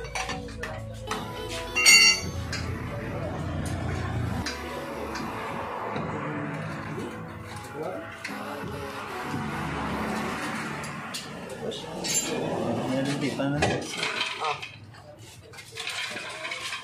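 Metal clinks of a steel four-way lug wrench working the wheel nuts, with one loud ringing clang about two seconds in.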